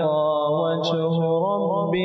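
A man reciting the Quran in melodic tajweed style, drawing out one long sustained note that bends gently in pitch and steps up slightly near the end.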